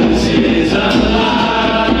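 A roomful of men singing a worship song together, led by a live band with guitar.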